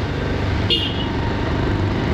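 Motorbike engine running steadily while riding, mixed with wind rush on the helmet-mounted microphone. A short high toot comes just before a second in.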